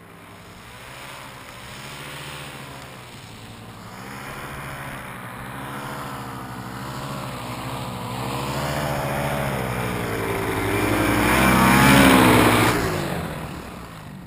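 Paramotor engine and propeller running on the ground, its pitch wavering up and down. It grows louder to a peak near the end, then drops off.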